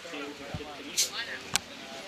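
Footballers' shouts carrying across the pitch, with a short, sharp knock about one and a half seconds in.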